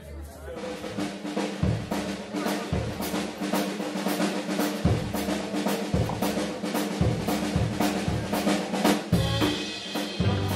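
Live rock band starting a song, about half a second in: a drum kit plays to the fore with regular kick-drum thumps and snare hits over held low notes from the bass.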